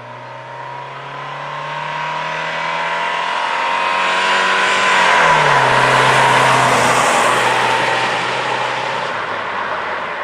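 A 1990 Dodge Spirit with the 2.5 L four-cylinder drives past at speed. Its engine and tyre noise grow louder as it approaches, and the engine note drops sharply in pitch as it passes, about five seconds in, before it starts to fade.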